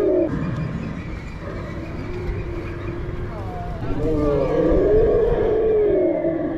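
Recorded dinosaur roars and growls played through loudspeakers at an animatronic dinosaur exhibit. They come as long, drawn-out bellows that bend slowly in pitch: one fades just after the start, a lower growl follows in the middle, and a loud bellow runs from about four seconds in.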